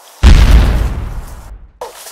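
Landmine explosion: a sudden loud blast about a quarter second in, heavy in the low end, dying away over about a second before cutting off abruptly.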